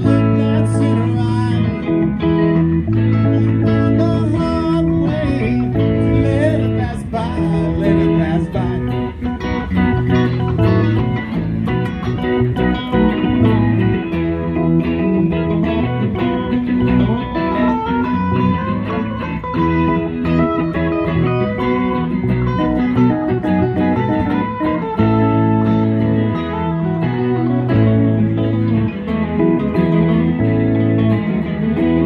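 Live band playing an instrumental passage: electric guitars over bass guitar and electric keyboard, continuous and loud.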